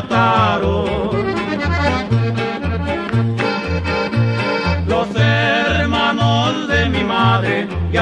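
Norteño music in an instrumental passage: a button accordion plays the melody over bass notes on the beat, about two a second.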